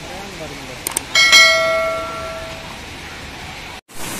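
A bell struck once, ringing out and fading over about a second and a half, over a steady background hiss.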